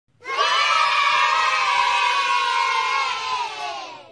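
A group of children's voices cheering together in one long held shout that starts about a quarter second in, drops slightly in pitch and fades out near the end.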